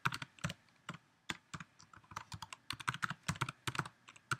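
Typing on a computer keyboard: irregular key clicks, with a quicker run of keystrokes near the end.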